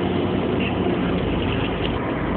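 City bus running, a steady low drone of engine and road noise heard from inside the passenger cabin.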